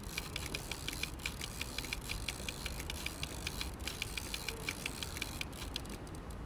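Rapid, irregular light ticking, several ticks a second, over a low steady rumble.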